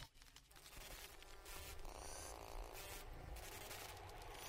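Faint scratchy crackle and static hiss over a steady low hum, like a glitch or old-film noise effect.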